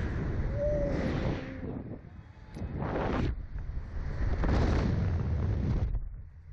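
Wind rushing and buffeting the onboard camera microphone of a Slingshot ride as the capsule swings through the air, with a rider's brief pitched cry about half a second in and two louder surges around three and five seconds in.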